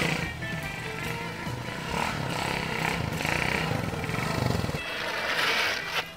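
Small motorcycle engine running steadily under background music; the engine sound stops about five seconds in.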